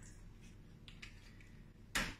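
Quiet room tone with a faint tick about a second in, then one short, sharp click near the end: a small glass Angostura bitters bottle set down on the bar counter.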